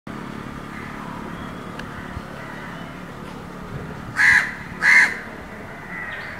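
A crow cawing twice, two short harsh calls under a second apart, over a steady background hum.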